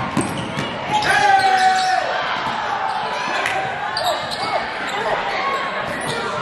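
Basketball game sound in a gymnasium: the ball bouncing on the hardwood court amid shouting from players and crowd, with the echo of a large hall. A shout about a second in is the loudest moment.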